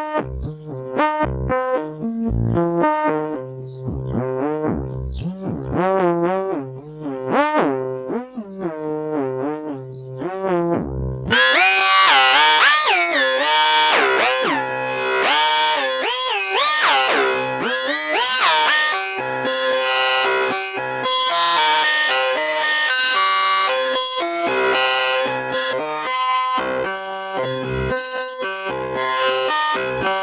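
Tesseract Modular Radioactive Eurorack digital voice module playing a dry sequence of short synth notes with swooping pitch glides. About eleven seconds in the tone turns much brighter and fuller, and the notes run on more densely to the end.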